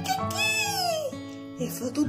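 A long animal cry, like a dog's howl or a cat's meow, falling in pitch over steady background music: part of the story animals' 'concert' of braying, barking, meowing and crowing.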